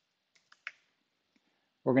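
Three quick, faint keystrokes on a computer keyboard, then a single click a little later.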